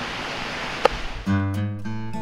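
Steady outdoor hiss, then background acoustic guitar music comes in with a strummed chord a little over a second in.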